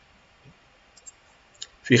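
A few faint, separate computer mouse clicks, the last about a second and a half in, followed near the end by a man starting to speak.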